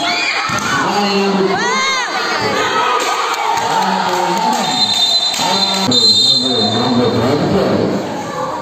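Basketball crowd shouting and cheering, many high voices yelling over one another in rising-and-falling calls.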